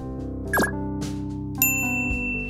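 Outro jingle with steady electronic chords. A short falling swoop effect comes about half a second in, and a bright bell-like ding about one and a half seconds in rings on: the sound effects of a subscribe-button and notification-bell animation.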